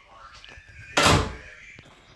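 A door shutting with a single thud about a second in.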